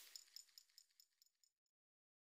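Near silence: a faint run of high, evenly spaced ticks fades away in the first second and a half, then complete silence.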